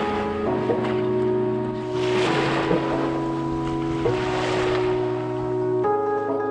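Background music of sustained chords, changing every second or two, over the wash of sea waves that swell up twice.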